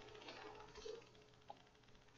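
Near silence: faint room tone, with one tiny click about a second and a half in.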